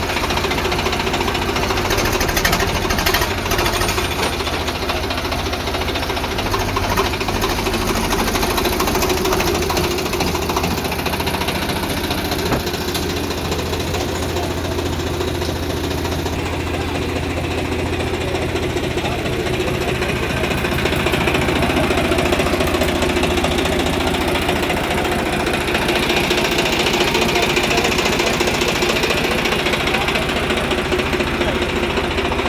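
Swaraj 744 FE tractor's three-cylinder diesel engine idling steadily, with an even, rapid diesel knock, a little louder in the last third.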